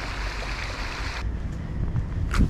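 Outdoor ambience with wind on the microphone: a steady low rumble under a hiss that drops away abruptly just over a second in.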